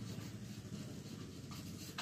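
A marker pen writing a word on a whiteboard, faint and continuous.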